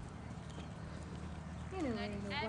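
A dressage horse's hoofbeats on a sand arena, under a steady low rumble. Near the end a voice comes in with a long falling pitch that then levels off.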